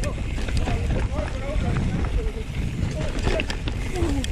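Mountain bike riding rough dirt and rock singletrack: a steady rumble of wind on the camera microphone, with scattered clicks and knocks from the bike rattling over bumps.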